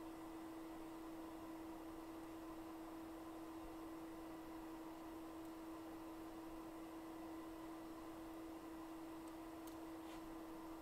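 A faint steady hum at one pitch, unchanging throughout, over low room hiss.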